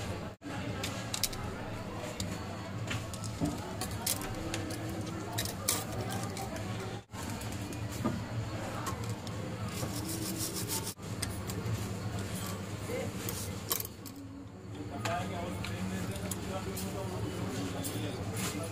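Faint background voices over a steady low hum, with light clicks and rubbing from a circuit board being handled on a workbench.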